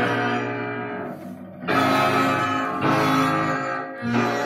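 An old Vietnamese 'nhạc vàng' ballad playing through a tube amplifier and Tannoy Mercury M20 bookshelf speakers. In this instrumental passage, plucked guitar chords ring out, with a new chord struck a little under two seconds in and again near three seconds.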